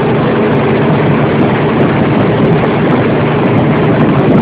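Tractor-trailer truck driving, its engine and road noise heard from inside the cab as a loud, steady rumble.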